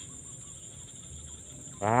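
Steady, high-pitched chirring of insects in the grass, with a man's long drawn-out "wah" starting near the end.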